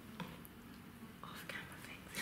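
Faint whispering with a few soft, short clicks in a quiet small room.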